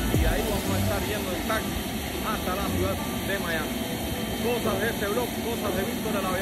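Business jet's rear-mounted turbofan engines running steadily nearby with a constant whine, under a man's voice.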